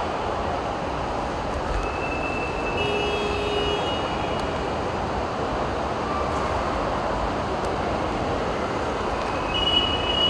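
Steady outdoor traffic noise, a continuous hum and rush of vehicles, with a few faint brief high tones standing out, one a few seconds in and another near the end.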